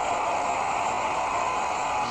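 A steady, even hiss of noise, with no speech or music.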